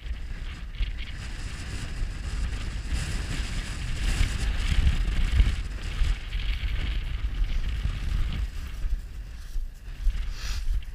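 Wind buffeting the camera microphone: a continuous low rumble with a rushing hiss that grows louder through the middle and eases off near the end.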